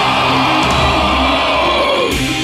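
Heavy metal song: a long held harsh scream over distorted metal backing and low bass, the scream sagging in pitch and cutting off right at the end.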